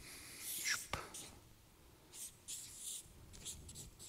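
Faint breaths and small mouth noises from a person pausing between phrases at a microphone, with a sharp click about a second in.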